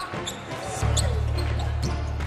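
Basketball dribbling and sneakers squeaking on a hardwood court as players run the floor. A steady low hum comes in suddenly just under a second in.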